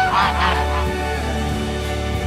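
Geese honking, several calls close together in the first half-second, over background music with a held low note.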